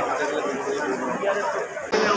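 Indistinct chatter of several men talking at once.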